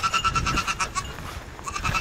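Goat bleating: a high, quavering call that stops about a second in, with a faint trace of it again near the end.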